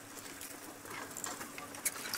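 Open safari vehicle's engine running quietly at low speed, a faint steady hum, with light rustling and a few small clicks, one sharper click near the end.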